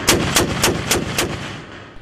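Bradley-mounted XM813 30 mm automatic cannon firing a short burst of five rounds, a little over three shots a second, each shot sharp and booming. The last shot's echo rumbles away over the remaining second.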